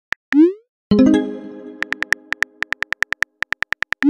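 Chat-app sound effects: a keyboard tap, then a short rising pop as the message is sent, followed by a ringing chord that fades. Then a quick run of keyboard tap clicks, about ten a second, as the next message is typed.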